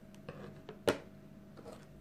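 Faint steady hum with one sharp click about a second in, a small object knocking on the table as it is handled.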